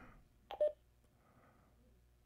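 A click and a brief beep about half a second in as the push-to-talk of an AnyTone AT-D878UV II Plus handheld DMR radio is keyed to transmit to the hotspot.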